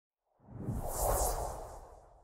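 Whoosh sound effect for an animated title graphic: a rushing swell with a deep rumble under it. It builds from about half a second in, peaks around a second and fades away.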